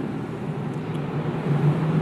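Steady background noise with a low hum, heard in a pause between spoken sentences.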